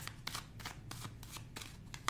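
A deck of tarot cards being shuffled by hand: a quick run of soft card slaps and clicks, about five or six a second.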